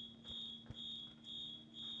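Fire alarm beeping: a high, piercing beep repeating about twice a second, each beep short, from a fire-alarm recording being played back.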